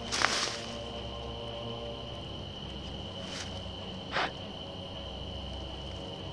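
Night insects such as crickets trilling steadily on one high tone over a low electrical hum, with three brief rustles.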